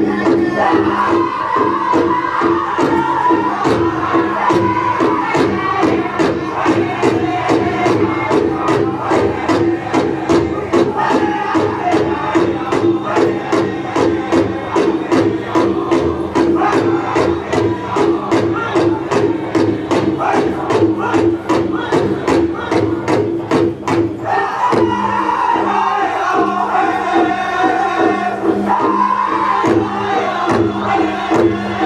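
Powwow drum group singing a Northern-style contest song in unison over a steady, even beat on a large shared powwow drum. About 24 seconds in the drumbeat drops back while the voices carry on.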